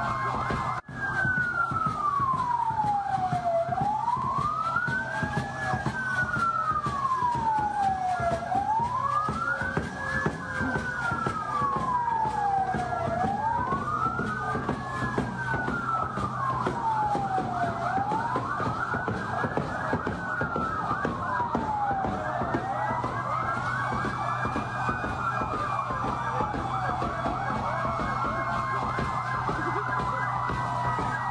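A vehicle siren wailing, its pitch rising and falling slowly about once every five seconds, over a steady low hum.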